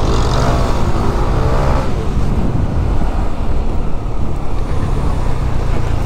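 Yamaha NMAX scooter riding through traffic, its engine running steadily under a dense rumble of wind on the microphone. In the first two seconds a close vehicle's engine note sweeps in pitch as it goes by.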